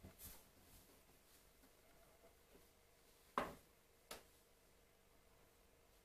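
Near silence broken by a few knocks and thumps from a removed wooden door panel being carried off and bumped. The loudest thump comes just past halfway, with a lighter knock right after it.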